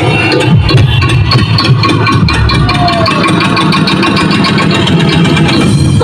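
Loud, bass-heavy electronic dance music with a steady beat, played through a street disco sound system's stacked Geraldez speaker cabinets.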